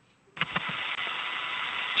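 A radio voice loop keying open: a steady hiss of static comes on suddenly about a third of a second in, sounding narrow, as through a radio channel, just ahead of a spoken flight callout.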